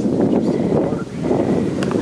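Wind buffeting the microphone: an uneven low rumble that eases briefly about a second in.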